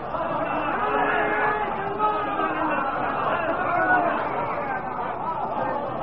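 Speech on an old tape recording that sounds thin, with no clear words: voices talking, or a man speaking or reciting.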